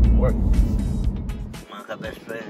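Low road rumble of a car heard from inside the cabin, under background music and a man's voice; the rumble fades and drops away near the end.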